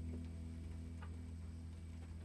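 Steady hum from a guitar amplifier, with a couple of faint ticks as the hollow-body electric guitar is handled.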